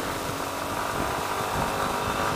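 Yamaha Ténéré 250 motorcycle's single-cylinder engine running steadily while under way, mixed with steady wind and road noise.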